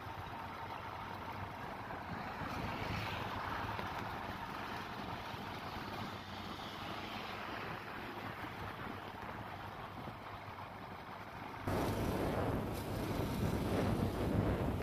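Road and wind noise from a moving vehicle carrying the recording: a steady rush of tyres and air on the microphone, which turns louder and harsher about twelve seconds in.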